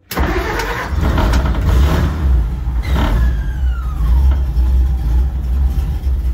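Dodge M37's flathead inline-six engine starting right away and running steadily, with a faint whine falling in pitch a few seconds in. It runs with a newly installed rev limiter temporarily wired to the ignition coil.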